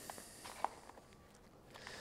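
Faint handling noise and one soft click under a second in, as hands close the zip of a waterproof TPU phone pouch.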